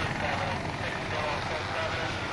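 A steady, even rumbling noise with the character of a running vehicle or aircraft, without music.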